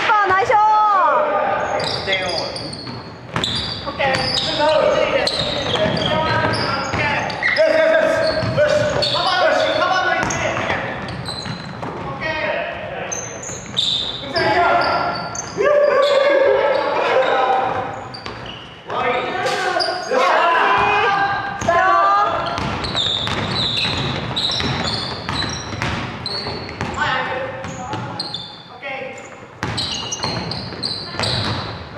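Basketball game in a large gym: players shouting and calling to each other, with a basketball bouncing on the wooden floor, all echoing in the hall.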